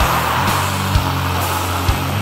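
Heavy metal music: heavily distorted electric guitar and bass holding low sustained chords, with a few sharp drum hits.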